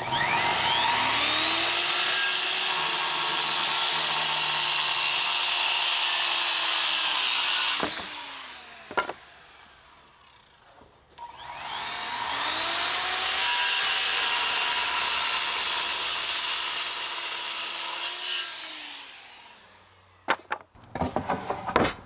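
Skilsaw circular saw crosscutting wooden boards twice: each time the motor spins up with a rising whine, runs steadily through the cut for about five seconds, then winds down. A single knock comes between the two cuts, and several sharp knocks follow near the end as the boards are handled.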